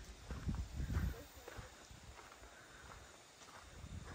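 A few faint footsteps on dirt in the first second or so, then quiet outdoor ambience.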